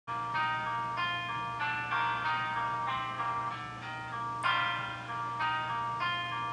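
Instrumental backing track playing the song's introduction: a steady pattern of ringing pitched notes, a few a second, over a steady low hum.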